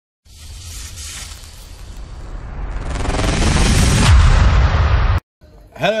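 Intro sound effect: a rising swell of noise that grows louder for about four seconds into a deep boom, then cuts off abruptly.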